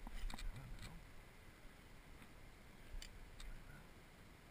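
Handling noise from a fishing rod and reel being picked up: a cluster of sharp clicks and low knocks in the first second, then two more clicks about three seconds in.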